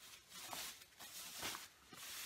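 Faint rustling of a thin protective bag being pulled off a banjo, in a few soft swishes.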